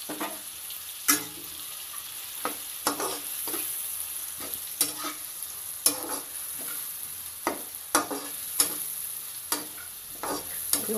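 Chopped onions sizzling in hot oil and butter in a pan, with a spatula stirring them and knocking against the pan about a dozen times.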